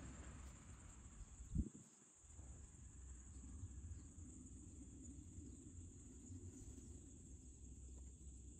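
Near silence: a faint, steady high-pitched whine in the background, with a single soft knock about one and a half seconds in.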